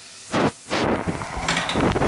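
Two loud bumps a little under a second apart, then breaded carrot patties sizzling loudly in hot fat in a frying pan.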